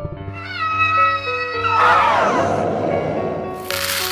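Background music with a screeching, monster-like cry laid over it. The cry wavers in pitch, then breaks about two seconds in into a harsh roar that slides downward and fades. A short hissing burst comes near the end.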